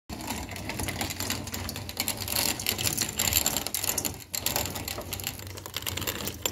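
Dense, steady clicking and rattling of dry white corn kernels against metal, as the grain is handled in a metal basin and fed through a hand-cranked grain mill, with a brief break about four seconds in.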